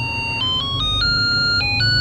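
Three-pin melody IC circuit playing a tune through a small loudspeaker: a string of plain electronic notes, a few per second, stepping up and down in pitch.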